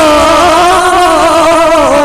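A man's long, held sung note in a folk song, wavering with small ornaments and sliding slowly down in pitch, then tailing off near the end.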